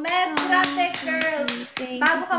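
Quick, slightly uneven hand clapping, about five claps a second, over a woman's voice singing drawn-out notes.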